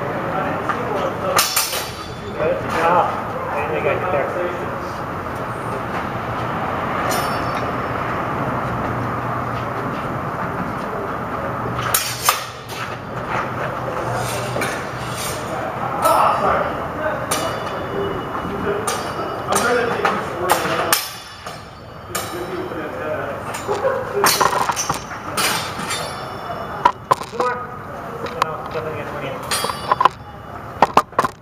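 Longsword blades clashing now and then: scattered sharp metallic clinks with a brief ring, over indistinct background voices.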